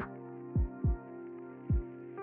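Intro music: sustained synthesizer chords with deep electronic drum thumps, two close together about half a second in and one more near the end.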